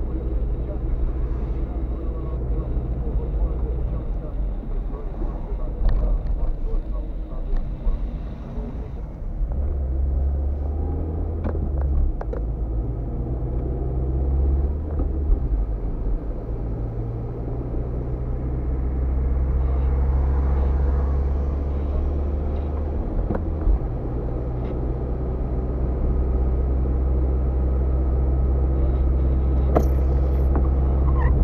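Moving car heard from inside the cabin on a wet road: a steady low engine and road drone with tyre hiss, shifting in level a few times, and a few light clicks.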